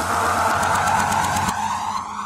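Closing jingle of a TV news bulletin: the electronic music's beat gives way to a loud, dense noisy swell with fast fine ticking on top. The ticking stops about one and a half seconds in, and the swell then begins to fade.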